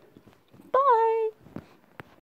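A woman's short, high-pitched vocal sound, one held note lasting about half a second, coming just after a faint click. A couple of faint clicks follow.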